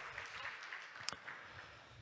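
Audience applause dying away, with a single sharp click about a second in.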